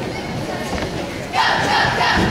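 A cheerleading squad shouting a cheer in unison. The group shout starts suddenly about one and a half seconds in, louder than the mixed voices and crowd murmur before it.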